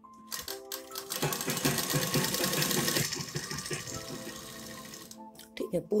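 Sewing machine stitching a folded hem in a run of rapid needle strokes: it picks up speed about a second in, then slows and stops a little after five seconds. Background music plays underneath.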